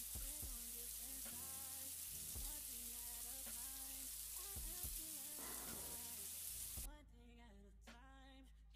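Shower water spraying steadily, a soft even hiss, under quiet background music with a slow melody. The hiss cuts off suddenly about seven seconds in, leaving only the music.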